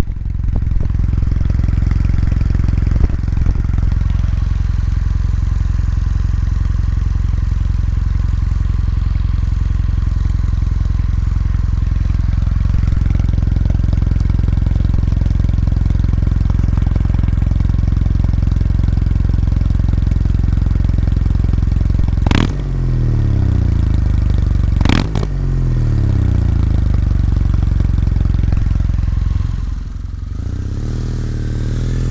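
Kawasaki W800's air-cooled parallel-twin engine idling steadily, heard close to its silencers. Near the end it gives two quick throttle blips a couple of seconds apart, each falling back to idle.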